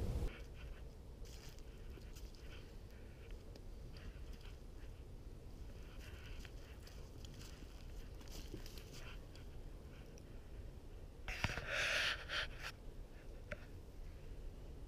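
A trapped coyote moving and pulling against the trap in dry leaves: scattered faint rustles and clicks over a low steady rumble, with a louder burst of rustling lasting about a second and a half near the end as it lunges.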